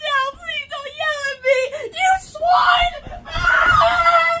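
A boy wailing and screaming, a wobbling cry for the first two seconds turning into a longer held scream, with low footstep thuds underneath as he runs off.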